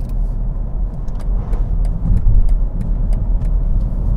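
In-cabin road noise of a BMW X7 cruising at expressway speed: a steady low tyre and road rumble from its 24-inch wheels, swelling slightly about halfway through, with a few faint scattered clicks.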